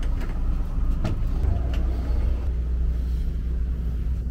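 Steady low rumble of a large yacht's inboard engines idling at the dock, with a couple of light clicks.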